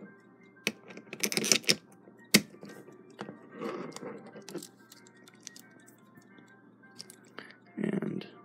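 Small metal clicks and taps from a Westclox Big Ben chime alarm clock movement while its time-side mainspring is let down, with a screwdriver holding off the click. Several sharp clicks come in the first two and a half seconds, then a rustling scrape about four seconds in, scattered faint ticks, and a duller thump near the end.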